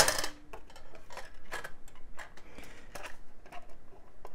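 A single sharp snap as the mini PC's tight-fitting cover panel pops free, with a brief ring after it, followed by light clicks and rustling handling noise as the panel is lifted open.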